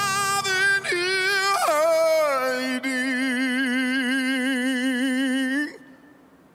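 A male vocalist singing a soul ballad. About a second in he sings a short run that falls in pitch, then holds one long note with wide vibrato, and it cuts off near the end.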